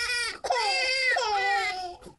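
A small child crying: a short high-pitched cry, then a long drawn-out cry of about a second and a half that fades near the end.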